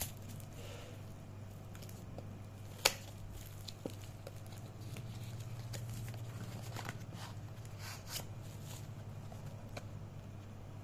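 Cardboard packaging being handled and opened: scattered light taps, clicks and rustles, with one sharp click about three seconds in. A steady low hum runs underneath.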